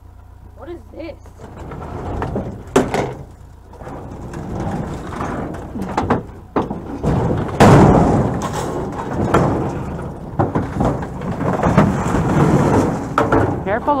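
Aluminium-framed glass window assembly being handled and set or thrown down among scrap: a run of metal clanks, rattles and scraping, loudest about eight seconds in.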